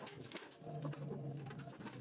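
A pigeon cooing, one low drawn-out coo lasting about a second through the middle, with a few light clicks from sheet metal being handled.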